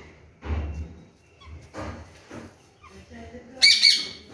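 Alexandrine parakeet giving one short, loud, harsh squawk near the end, after a thump about half a second in and softer voice-like sounds from the birds.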